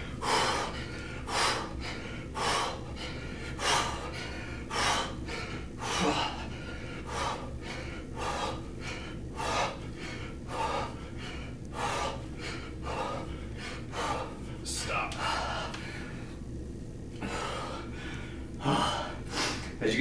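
A man breathing hard and rhythmically through kettlebell swings, sharp breaths in and out about two a second, the sound of someone really winded from high-intensity effort. A low steady hum runs underneath.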